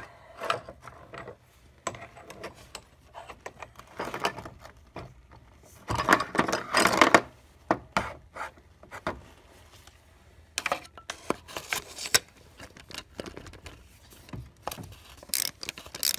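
Hand tools and engine parts being handled during a spark plug change: scattered clicks and knocks, with a longer, louder scraping rattle about six seconds in as an ignition coil is worked out of its spark plug well. Near the end, a ratchet with a spark plug socket on an extension clicks as it is seated down the well.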